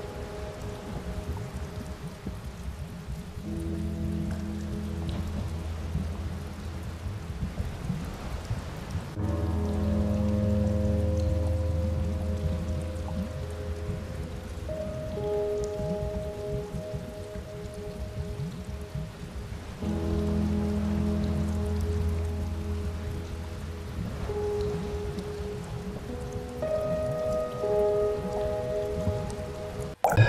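Slow ambient synth music: sustained chords over a deep bass that swell and change every few seconds, laid over a steady rain-like hiss.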